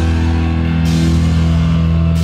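Heavy metal band playing live: distorted guitars and bass holding a low, steady chord, with a drum kit and a cymbal wash coming in about halfway through.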